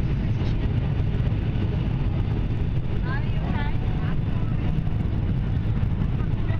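Steady low rumble inside the passenger cabin of a Boeing 757 airliner on final approach: engine and airflow noise at an even level throughout.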